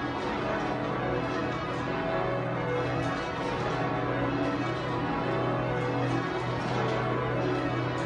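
The twelve bells of St Mary Redcliffe, a Taylor ring with a tenor of about 50 cwt in B, rung full-circle by hand in a continuous sequence of strokes, with the deep hum of the heavy bells sounding under the higher ones.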